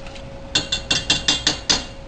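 Metal whisk tapped rapidly against the rim of a stainless steel saucepan of gravy, about eight sharp clinks in a second and a half, starting about half a second in.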